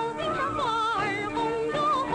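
A woman singing a Mandarin song in a bright, high voice with strong vibrato and sliding notes, over instrumental accompaniment. She holds a long warbling note near the end.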